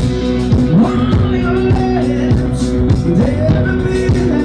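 Rock band playing live: electric guitar over bass and drums with a steady beat.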